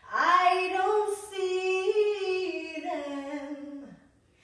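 A girl singing a cappella: one long sung phrase, held and then sliding down in pitch as it ends.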